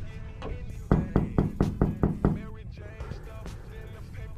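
A quick run of about seven sharp knocks at a glass office door, about five a second, over faint background music.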